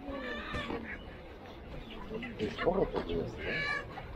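Market hubbub: voices of people nearby mixed with calls from caged poultry (ducks, geese and chickens). A few short high-pitched calls stand out, one at the start and one near the end.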